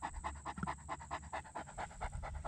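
A Great Dane panting open-mouthed in a fast, even rhythm of several breaths a second, close up.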